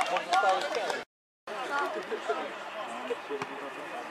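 Scattered voices of spectators and players calling out at an outdoor football match, with a few short knocks. The sound cuts out completely for a moment about a second in.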